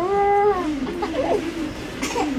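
A baby crying: a loud wail of about half a second that rises and falls in pitch, then quieter, wavering crying.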